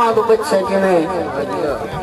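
A man's voice drawing out the last words of a sung Punjabi verse recitation, fading into overlapping voices.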